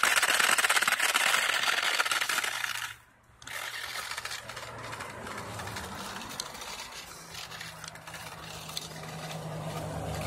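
A small RC car running as it drives off to push snow with a plow. Its noise is loud for about the first three seconds, cuts out briefly, then carries on as a quieter steady hum.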